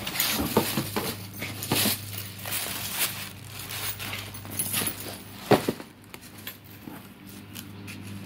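Plastic wrapping crinkling and cardboard shoeboxes being handled and shifted, with one sharp knock about five and a half seconds in.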